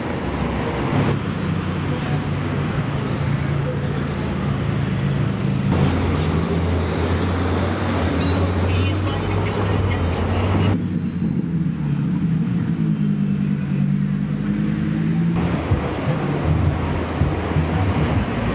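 Street traffic with car engines running low as cars pull past, one engine note rising slowly near the middle; the sound changes abruptly several times.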